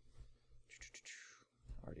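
Near silence: room tone, with a faint breathy hiss a little under a second in, then a man's voice starting a word near the end.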